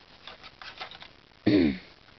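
Light plastic clicks of foam darts being pushed into the Nerf Barricade RV-10's rotating ten-dart cylinder, followed by a short, loud cough about one and a half seconds in.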